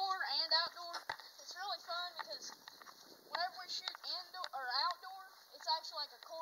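A child's voice laughing and calling out without clear words, with a sharp click about a second in.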